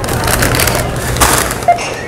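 A plastic bag crinkling and rustling as it is lifted and handled, in a quick run of crackles over a low steady hum.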